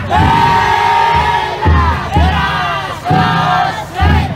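Many men shouting a festival chant in unison around a futon daiko float: a long held call and then about three shorter, falling calls, each opening with a low thump.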